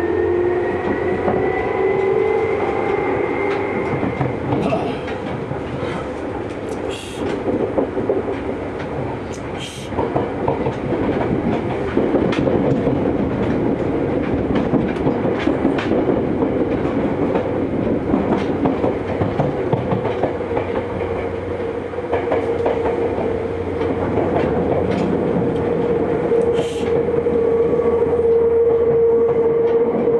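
Seibu 2000 series electric train heard from inside the car: the motor whine rises in pitch over the first few seconds as the train gathers speed, over rumbling wheels and scattered rail clicks. From about the middle on it settles into a steady hum at running speed.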